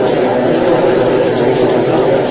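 Glitched audio playback in Adobe Animate CC: a loud, steady, garbled noise with no clear words or tune, sitting mostly in the low and middle range.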